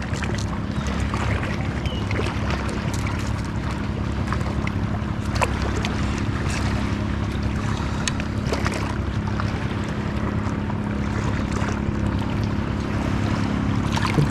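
Steady wind and water noise on an action-camera microphone, with a low steady hum underneath. A few faint clicks and drips come as a freshly caught fish is handled on the line.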